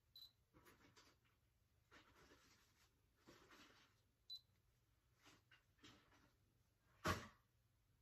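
Near silence with the faint rustle of a Canon G7X Mark II compact camera being handled, two short high beeps, and one sharp click about seven seconds in.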